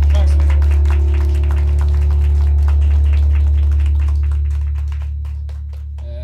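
Live rock band letting a loud, low chord ring out, with scattered drum and cymbal hits over it, dying away about five seconds in, as at the end of a song.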